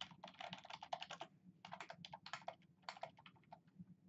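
Computer keyboard typing: quick runs of soft keystrokes in clusters, with brief pauses between them.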